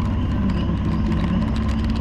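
Motorcycle engine running steadily at cruising speed, with wind and road noise from riding on wet pavement.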